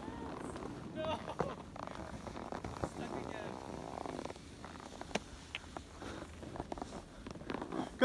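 Faint, distant voices of people on a ski run, with scattered short clicks and a brief scraping hiss about three seconds in, typical of snowboards and skis sliding on packed snow.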